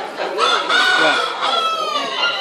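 Rooster crowing: a long pitched call starting about half a second in, with a final drawn-out part that falls in pitch near the end.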